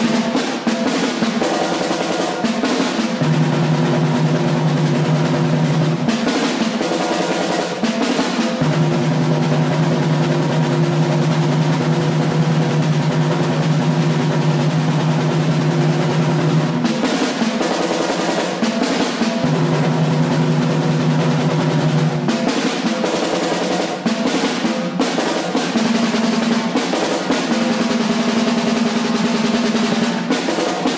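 A continuous snare drum roll held at an even level, with sustained low pitched tones under it that shift to new notes every few seconds.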